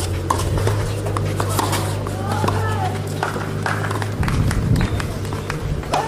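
Tennis ball struck back and forth with rackets on a clay court: sharp hits spaced through the rally, over a steady low hum that stops about four seconds in.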